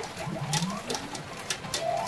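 Electronic sound effects from a P Fever Powerful 2024 pachinko machine: low tones gliding upward in pitch over the first second, with a few sharp clicks.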